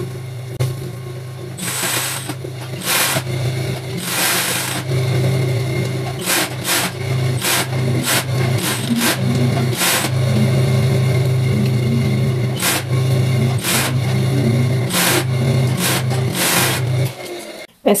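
Overlock machine (serger) running as it stitches and trims a fabric side seam: a steady low motor hum with louder spurts of stitching, stopping shortly before the end.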